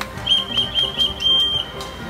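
A high whistling tone, wavering in quick pulses for about a second and then held steady briefly, over background music.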